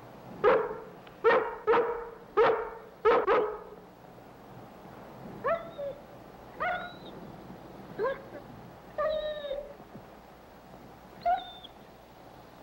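A dog barks five times in quick succession, then gives five shorter, higher yips spaced about a second apart.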